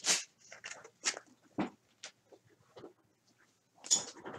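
Cardboard trading cards being handled: a few short rustles and taps with quiet between, the last as a card is laid down on the desk near the end.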